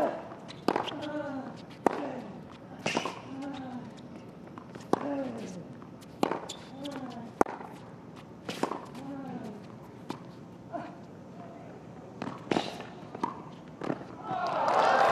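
A tennis rally on a hard court: a sharp pock of racket on ball about once a second, a dozen hits in all. Each hit is followed by a short falling grunt from the hitting player.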